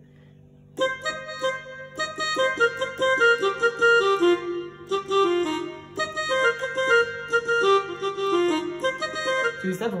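Yamaha PSR-E473 electronic keyboard playing a quick run of notes on the F pentatonic scale, many held and overlapping, starting about a second in.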